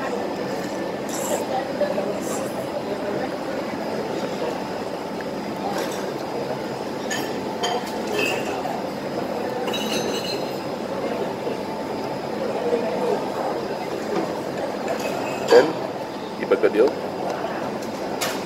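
Steady murmur of background chatter in a busy food centre, with scattered clinks of a metal fork and spoon against a bowl or plate, a few of them ringing briefly.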